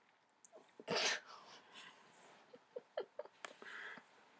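A faint, short breathy burst through the nose and mouth about a second in, followed by small mouth clicks and a soft breath near the end: a man's breath noises close to a voiceover microphone just after laughing.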